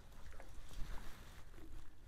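Faint wind rumbling on the microphone, steady and low, with a few tiny ticks.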